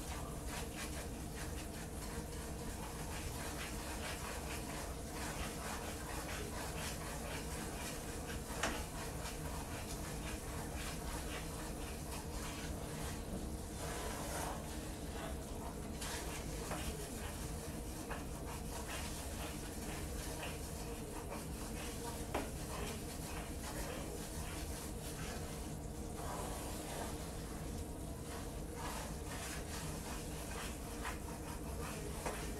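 Flour roux cooking in a skillet, sizzling softly while a wooden spoon steadily stirs and scrapes through it, with two light knocks of the spoon against the pan, over a steady low hum. The flour is being cooked out and darkening.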